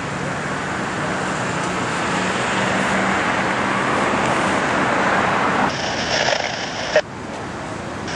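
Road traffic: a passing vehicle's engine hum and tyre noise building steadily over about five seconds. The background then changes abruptly, and a short sharp click comes about seven seconds in.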